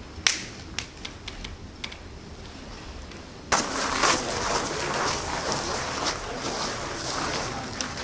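A few sharp, isolated knocks, the loudest just after the start, over quiet night air; about three and a half seconds in the sound cuts to a louder outdoor hubbub with faint voices.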